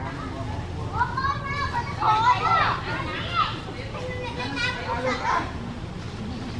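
Background voices of children and other people talking and calling out, loudest a couple of seconds in, over a steady low hum.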